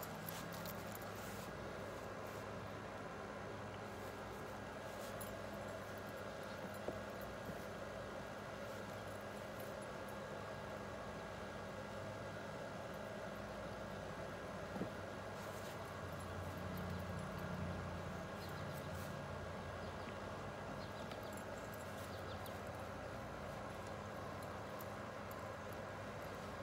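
Steady, faint outdoor background noise with a low hum that swells for a few seconds past the middle, and a couple of soft clicks; no distinct foreground sound stands out.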